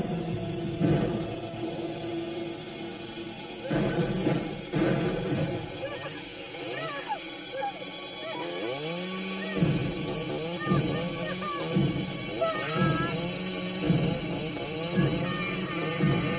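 Tense horror-film music with a woman's frightened, wavering cries. About halfway through, a chainsaw engine rises in pitch and keeps running in pulses.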